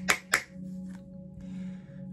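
Two quick finger snaps near the start, then a steady low background drone of ambient music.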